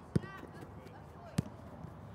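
A football kicked twice, each a short sharp thud, about a second and a quarter apart: a cross struck from the wide position, then the shot at goal. A brief child's call follows the first kick.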